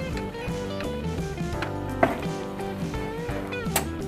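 Background music with plucked guitar, its notes held steadily, and two short knocks, one about two seconds in and one near the end.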